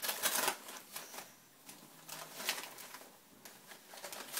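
Wrapping paper and a paper gift bag crinkling and rustling in short, irregular bursts as a cat noses and burrows through them. The loudest bursts come in the first half second and again about two and a half seconds in.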